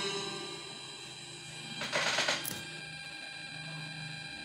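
A song's music dies away at the start, leaving a faint steady electronic hum with a short burst of noise about two seconds in.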